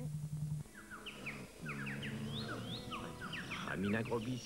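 Cartoon soundtrack music with many short, rising, bird-like chirps over it. A low steady hum cuts off about half a second in, just before the music starts.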